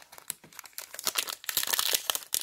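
Foil trading-card pack wrapper crinkling in the hands, a dense crackle that starts sparse and gets louder and busier about halfway through.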